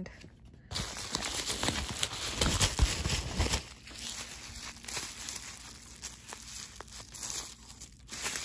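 Packaging handled by hand: bubble wrap and crinkle-cut paper shred rustling and crinkling around a bottle being pulled out of a box. It starts just under a second in, is loudest over the next few seconds, then goes softer.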